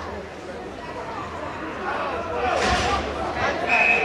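Indistinct chatter of voices in an ice rink, with a short rush of noise about two and a half seconds in and a steady high tone starting near the end.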